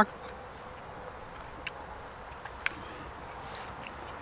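Faint steady buzz of a flying insect, with two short light clicks about a second apart in the middle.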